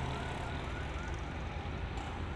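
Steady city road-traffic ambience with a low rumble. A faint short chirp repeats about three times a second during the first part and fades out.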